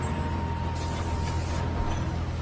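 Cinematic low rumbling drone under a thin steady high tone, with a burst of hiss about three-quarters of a second in that lasts nearly a second.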